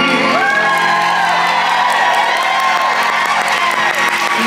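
A sung piano chord ends right at the start, and an audience breaks into cheering, whooping and applause for the finished song.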